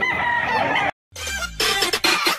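A rooster crowing, cut off abruptly just under a second in. After a brief silence, an electronic glitch-and-swoosh transition effect begins.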